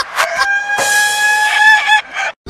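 A rooster crowing: one long call held on a steady pitch for over a second, starting about half a second in and wavering just before it ends.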